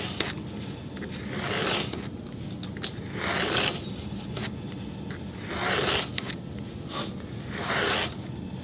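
A knife blade drawn along a straightedge, scoring into cardboard: four separate scrapes about two seconds apart as the cut is deepened pass by pass along the same groove rather than made in one go.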